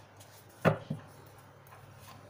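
Tarot cards being handled: a sharp tap about two-thirds of a second in, then a softer one, as the deck is knocked against the table.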